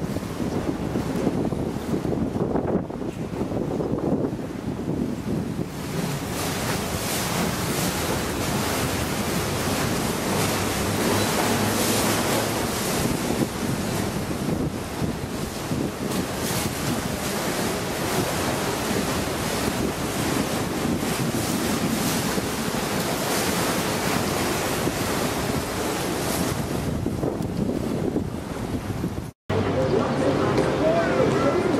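Wind buffeting the microphone and water rushing past a moving river boat, with the boat's engine running low underneath. The noise grows louder about six seconds in and cuts out for an instant near the end.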